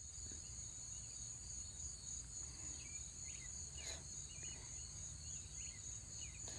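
Faint, steady high-pitched chirring of insects, with a few faint brief chirps over it.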